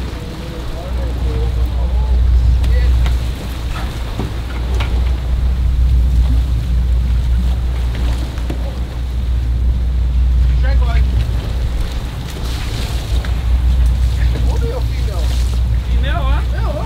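Sportfishing boat's engine running with a steady low rumble, wind buffeting the microphone and water rushing past the hull, with faint shouts from the crew.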